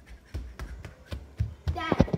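Quick footsteps on a hard floor, with handling thumps from a phone carried in the hand, about three a second. A short burst of a young girl's voice comes just before the end.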